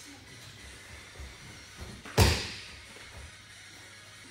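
A judoka thrown onto the tatami mat, landing with one loud slap-thud about two seconds in that rings briefly in the hall, after a couple of lighter thumps of feet on the mat.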